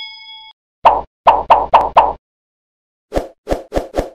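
Editing sound effects: a notification-bell ding fading out in the first half second, then five quick plops about a second in, and four lower, shorter plops near the end.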